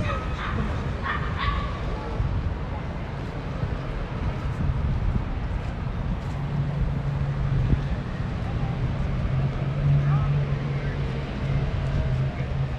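Busy city street ambience: car traffic passing and pedestrians' voices. From about halfway a steady low engine hum from a nearby vehicle rises in level.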